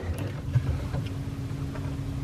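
Low steady hum with a thin held tone, and a few faint knocks of bottles being handled in an open fridge.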